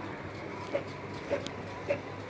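Epson L3250 inkjet printer printing: the print-head carriage shuttles back and forth, giving a short pulse at the end of each pass a little under twice a second over a steady low hum.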